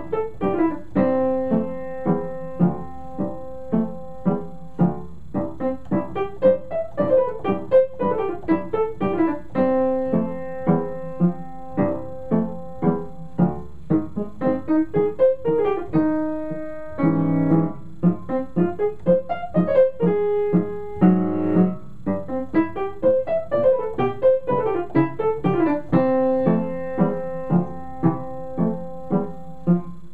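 Solo piano playing a brisk piece: quick falling runs alternate with repeated short chords, with a louder held chord about seventeen seconds in.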